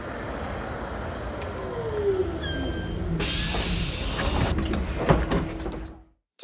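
Cartoon bus sound effects: the engine rumbles steadily as the bus draws up, with a brief high squeal about two and a half seconds in. A pneumatic hiss follows for about a second as the doors open, and there is a sharp click near the end.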